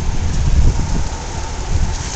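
Wind buffeting the microphone: a steady, uneven low rumble with a hiss over it.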